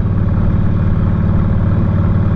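Harley-Davidson Softail Springer's V-twin engine running steadily, an even low drone with no change in revs.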